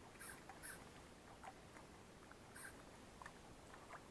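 Near silence: faint outdoor ambience with a few tiny scattered ticks and short high squeaks.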